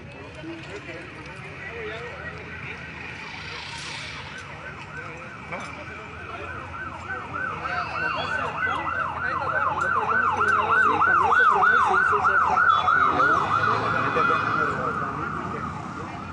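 Emergency vehicle siren on a fast yelp, warbling up and down about three to four times a second. It grows louder, is loudest a little past the middle, then fades as it moves away.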